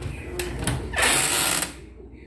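A few light clicks, then a short rattling scrape of under a second that stops abruptly: a glass-paned wooden china cabinet door being handled and swung open.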